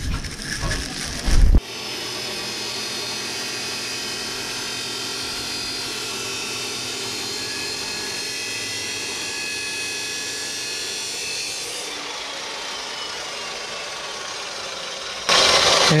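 Abrasive cut-off saw (chop saw) cutting through steel square tubing, a steady high whine of the disc in the metal that eases off near the end. A few knocks come in the first second and a half.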